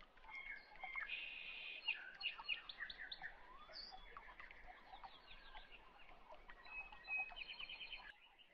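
Faint birdsong: several birds chirping, with quick repeated trills about a second in and again near the end.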